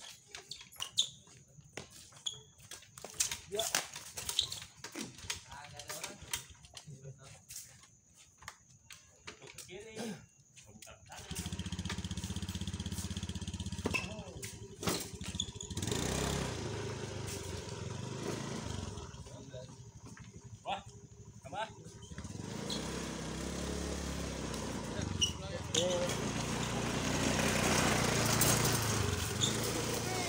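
Badminton doubles rally: sharp racket strikes on the shuttlecock and quick footsteps on the court, heard as a string of separate clicks. From about eleven seconds in, a steady low rumble sets in and grows louder toward the end.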